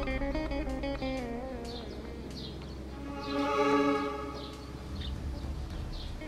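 Background score music led by a plucked string instrument, playing held, wavering notes that swell about halfway through.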